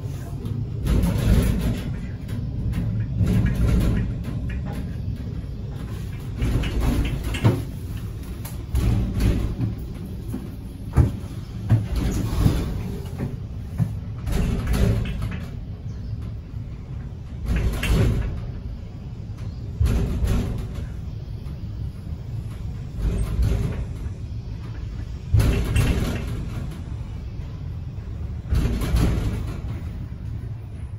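Schindler inclined traction lift in operation: a continuous low rumble, with loud gusts of wind noise surging every two to three seconds under strong monsoon winds.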